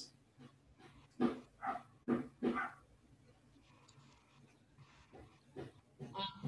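Four short bark-like calls close together, starting about a second in, then faint background sound.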